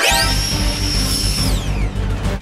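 Hand-mounted electric ducted-fan (EDF) jets suddenly spinning up to full power with a loud, high whine over a low rumble, holding steady for about a second, then winding down in pitch near the end. The jets went to full power by fault: the controller sent all remaining motors to full power when one motor was unplugged.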